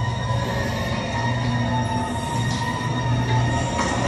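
Dark-ride car rolling along its track: a steady low rumble with thin, steady higher tones over it.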